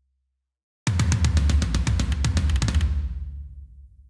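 Sampled metal drum kit (Unwavering Studios Saudade kit) playing back a programmed tom fill with kick drum and cymbals: a fast run of hits that starts suddenly about a second in, stops near the three-second mark, and rings out. Every note sits at the same full velocity, the stiff machine-gun sound of unhumanized MIDI toms.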